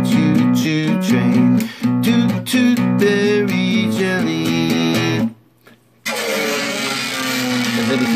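Nylon-string classical guitar chugging two-string E and B chords under a sung vocal line, stopping about five seconds in. After a short silence, a pick dragged down a string makes a harsh, scratchy noise with a sliding whine, a really irritating noise.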